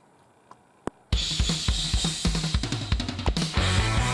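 Near silence with a couple of faint clicks, then a hard rock song cuts in suddenly about a second in, led by a full drum kit: bass drum, snare and cymbals. Sustained bass and guitar notes join near the end.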